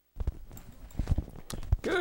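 Scattered light clicks and knocks, a few a second and irregular, of people moving in their seats close to body-worn microphones.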